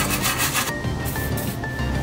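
Steel wire brush scrubbed back and forth over a rusty control-arm bolt head to clean it before loosening, heard as quick scratchy strokes mainly in the first part, over background music.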